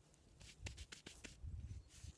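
Faint rustling and a few light clicks as a person gets up from kneeling on grass, over a low rumble.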